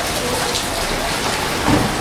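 Steady rain falling on paving stones, an even hiss that holds at the same level throughout.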